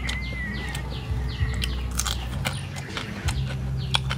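Crispy roasted quail being torn apart and eaten: a run of sharp, irregular crackles and crunches of skin and small bones. A bird gives a short wavering call just after the start, over a low steady hum.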